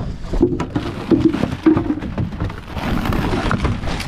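Rumbling, crackling handling noise with scattered knocks as gear on a small boat is moved about, and wind buffeting the microphone.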